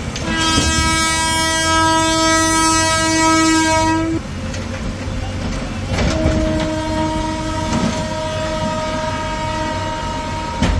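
Train horn sounding two long, steady blasts: the first lasts about four seconds, and the second begins about six seconds in. Under them runs the low rumble of a passing train.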